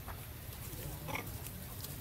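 A few faint, short calls from macaque monkeys about a second in, over a steady low rumble.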